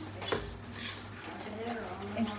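Steel ladle scraping and clinking against a metal kadhai as a dry, crumbly mixture is stirred, with a sharp clink about a third of a second in.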